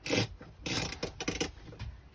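Short handling noises of items being moved on the kitchen counter and wall fittings: a few brief scrapes and clicks over about two seconds, with a steady low rumble underneath.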